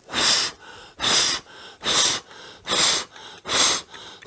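A man blowing hard, repeated puffs of breath onto a small wooden thaumatrope to set it spinning. There are five strong blows a little under a second apart, with quicker, quieter breaths drawn in between.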